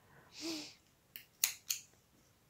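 Small spring-loaded thread snips snapping shut on cotton thread, three short sharp clicks about a second apart at first and then quicker, the last two loudest, as the excess thread is cut off. The snips are "getting dead", going dull.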